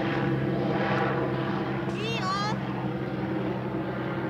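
A steady low engine drone, even and unchanging, with a short high warbling call about two seconds in.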